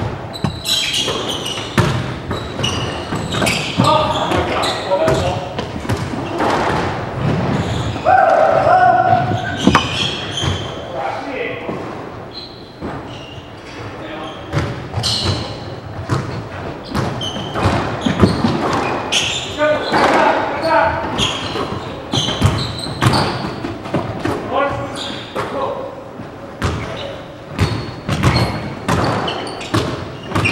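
A squash rally: the ball is struck by racquets and smacks off the court walls again and again, each hit echoing in the enclosed court, with sneakers squeaking on the hardwood floor. The hits thin out for a few seconds in the middle.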